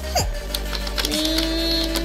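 A child singing a long, held "ding" note in a steady pitch, starting about a second in, with a short sung glide just before it. Light clicks of plastic toy pieces being handled sound throughout.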